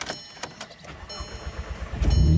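Volkswagen being started: a couple of clicks, then a faint high whine and a low rumble building over the second half as fuel pressure builds and the engine cranks, just before it fires.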